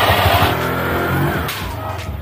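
Honda Click 150i's single-cylinder engine running with the CVT cover off, turning the new JVT pulley set and belt during a bench test; it is revved, then the revs drop away from about half a second in.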